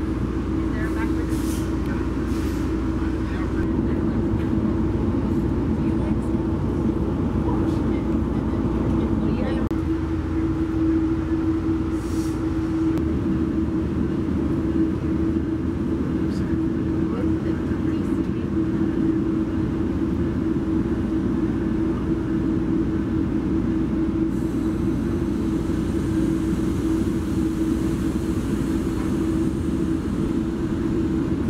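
Inside a Metrolink commuter-rail coach as the train rolls slowly out of the station: a steady hum over a low rumble, with a few faint clicks. A faint hiss comes in near the end.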